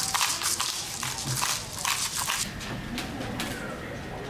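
Crisp rustling and crackling of parchment paper and vegetables being handled on a baking tray as they are seasoned, busiest in the first two and a half seconds, then quieter.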